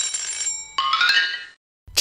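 A short bright chiming jingle used as a segment-transition sound effect. A high bell-like tone is followed by a quick rising run of notes, and the jingle stops about a second and a half in.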